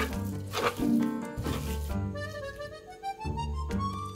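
Instrumental background music with a melody that rises in pitch in the second half. In the first two seconds, short wet squishing noises of a hand mixing seasoned raw chicken pieces.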